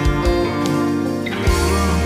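Background music: the instrumental part of a song, led by guitar over a steady bass line, with low drum hits.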